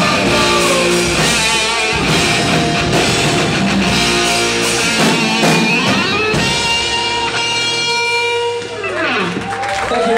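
Live rock band playing loud electric guitars, bass and drums. About six seconds in, the full-band playing gives way to long held, ringing guitar notes.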